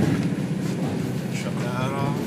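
Steady drone of an Ocean 65 yacht's diesel engines, heard from inside a cabin while the boat cruises at about 22 knots.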